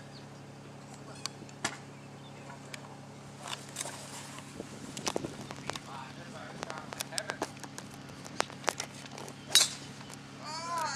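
Golf club striking a ball off the tee near the end, a single sharp click that is the loudest sound, over a steady low hum and scattered small clicks.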